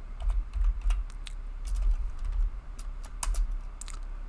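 Keystrokes on a computer keyboard: irregular quick taps as a terminal command is typed, over a low steady hum.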